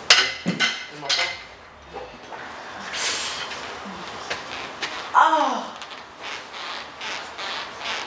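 Scattered short clicks and knocks, with one brief vocal sound about five seconds in whose pitch falls steeply, like a short exclamation or grunt.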